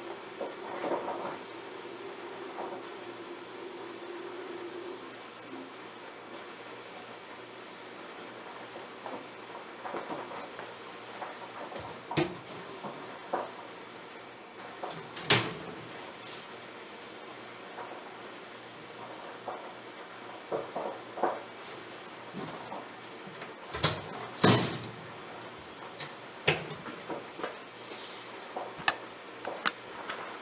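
Scattered knocks and clicks of a reptile tank and its fittings being handled and opened, the loudest about 15 and 24 seconds in. A low steady hum runs through the first five seconds.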